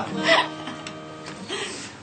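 Acoustic guitar chord strummed once and left to ring, dying away over about a second and a half, with a short laugh just after it begins.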